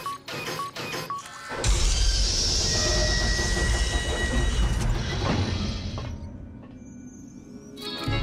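Animated sci-fi sound design: a door control panel clicks and gives three short electronic beeps, then a heavy hangar door rumbles open with a deep rumble and a rushing hiss for about four seconds before fading, over background music.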